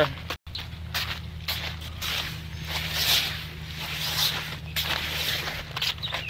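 Footsteps on a gravel driveway at a walking pace, with handling rustle from a hand-held camera, over a steady low hum.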